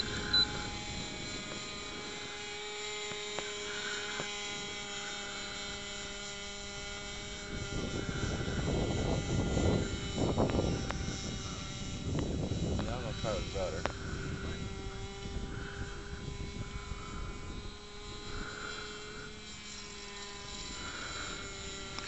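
Radio-controlled model autogyro in flight overhead, its motor giving a steady, droning note that dips slightly now and then. A louder rushing rumble swells over it from about a third of the way in to past the middle.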